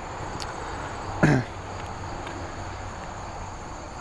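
Steady high-pitched insect chirring, with a short hum from a man's voice a little over a second in.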